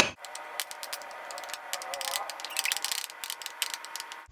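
Utensils stirring a dry flour mixture in a glass mixing bowl: a quick, irregular run of clicks and scrapes against the glass, busiest in the middle of the stretch.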